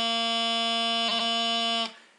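Bagpipe practice chanter holding one long steady note, broken by a quick grace-note flick about a second in, then stopping cleanly just before the end.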